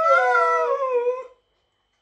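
A dog's drawn-out, wavering howl-like "I love you" vocalization, sliding slowly down in pitch and stopping a little over a second in. The owner takes it more for a tantrum over another dog getting a fuss than a real "I love you".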